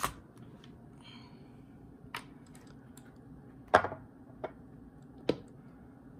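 A few sharp clicks and knocks of the cast-aluminium valve body of a DCT470 mechatronic unit being handled and set down, four in all. The loudest knock comes a little under four seconds in.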